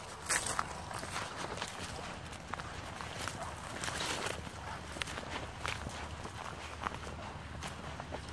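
Footsteps walking through dry grass and patchy snow: an uneven run of crunching and rustling steps, with one louder crunch about half a second in.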